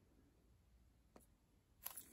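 Near silence, with a faint click about a second in and a brief rustle near the end from a shrink-wrapped book being handled.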